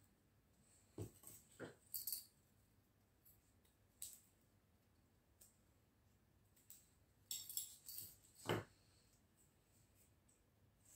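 Near silence broken by a few faint handling sounds from craft work on a table: soft knocks, clicks and paper rustles, in a cluster about a second in and another near the end, which closes with a low knock.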